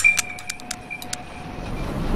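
Experimental sound-design soundtrack: a sharp click followed by a few more scattered clicks over a faint ringing tone that fades after about a second, then a noisy, low rumble that steadily swells.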